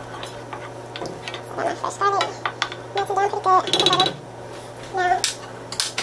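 Wooden spoon stirring and scraping around a skillet of melting butter and garlic, with light knocks of the spoon against the pan. Voices talk briefly at times.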